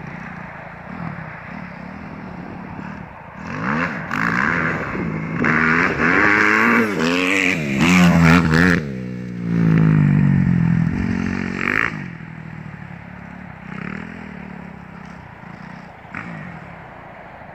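Kawasaki KX250F four-stroke single-cylinder motocross bike engine, faint at first, then growing loud from about four seconds in as the revs rise and fall repeatedly. It passes close with the pitch falling as it goes by, then fades into the distance after about twelve seconds.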